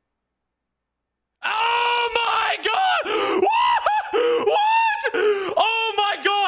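A man screaming and yelling in excited disbelief, long drawn-out cries that start suddenly about a second and a half in and run on with short breaks.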